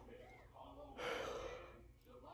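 A man drawing a breath through an open mouth about a second in, a short gasp-like inhale between spoken phrases.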